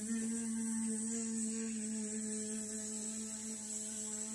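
A woman's voice making one long, steady 'bzzz' buzz in imitation of a bee, held at one pitch for about four seconds.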